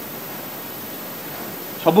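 Steady hiss of background noise in a pause between a man's words, his voice resuming near the end.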